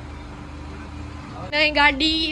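Car engine idling steadily outside the gate, a low even hum. About one and a half seconds in, a loud voice cuts in over it.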